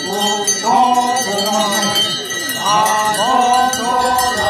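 Men's voices singing a traditional Konyak folksong together in long, drawn-out gliding notes, with a light metallic jingling running through it.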